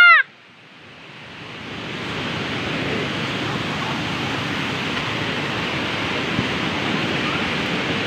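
A loud shouted voice breaks off at the very start. Then comes the steady rush of a river swollen with muddy floodwater, which grows louder over the first two seconds and then holds.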